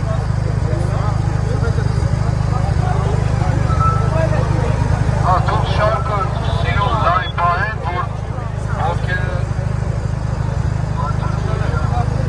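A large street crowd of marchers, many voices talking and calling out at once, with a few louder single voices rising out of it about halfway through, over a steady low rumble.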